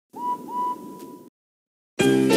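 Steam locomotive whistle sound effect: two toots that each rise into a steady pitch, the second held for most of a second, over a hiss of steam.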